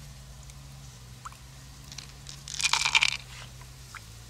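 A short crunching, crackling sound a little past halfway, with a few faint clicks around it, over a low steady hum.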